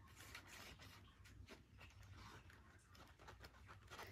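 Near silence with faint light scratching and paper rustles: a fine-tipped glue bottle drawn along a paper flap.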